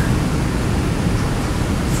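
Steady, even hiss of background noise with no distinct sound events: room and recording noise in a gap between the lecturer's words.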